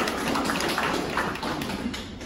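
A small audience clapping: dense, irregular claps that thin out and die away near the end.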